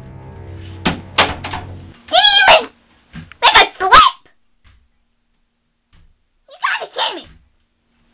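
A low steady musical drone that stops about two seconds in, with a couple of knocks near the first second. Then come three short, high-pitched cries from a young girl's voice, the pitch bending up and down.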